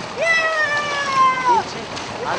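A high voice calls out once, held for about a second and a half, its pitch rising at the start and then slowly falling, over beach background noise.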